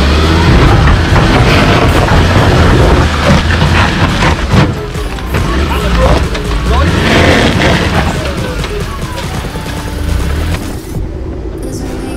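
Heavy wind buffeting on the microphone over a Ford Ranger pickup's engine working as it crawls over a rocky, muddy step. Music plays underneath, and the sound changes about a second before the end.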